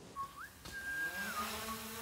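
DJI Mavic Air 2 quadcopter's motors and propellers spinning up for takeoff: a thin whine that rises early on, holds, then eases down, with a low steady hum joining about halfway through.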